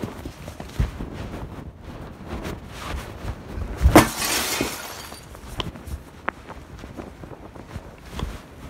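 Knocks and rubbing from the recording phone being handled or covered, with a loud thump about four seconds in followed by a brief hiss, and a few lighter clicks after it.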